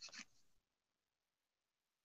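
Near silence, with a faint short sound right at the start.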